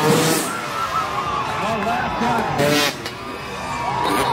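Dirt bike engine revving hard in surges as a freestyle motocross rider heads for the jump ramp, over the voices of a crowd.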